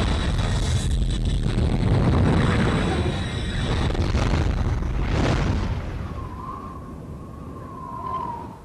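Film sound effects: a loud, continuous low rumble with two swelling whooshes, about a second in and about five seconds in. It fades over the last couple of seconds, where a thin held tone comes in.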